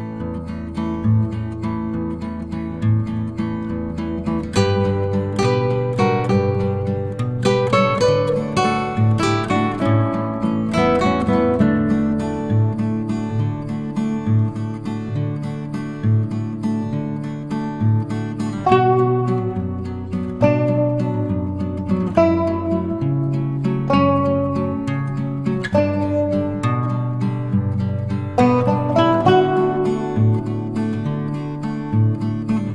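Instrumental background music: plucked, guitar-like notes played over a moving bass line.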